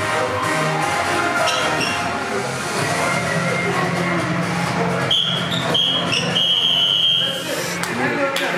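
Background music, with a high steady tone held for about two seconds past the middle.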